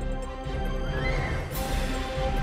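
News programme closing theme music with steady sustained tones. A rising glide comes about halfway through, then a brief swish near the end.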